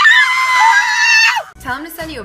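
A person's high-pitched scream, held steady for about a second and a half, then falling away in pitch.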